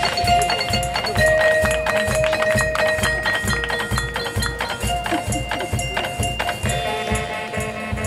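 Marching band playing: long held notes over a steady, evenly spaced drum beat.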